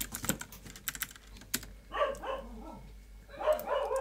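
Computer keyboard typing: quick runs of sharp key clicks in the first second and a half. About two seconds in, and again near the end, come louder, uneven sounds that are not key clicks.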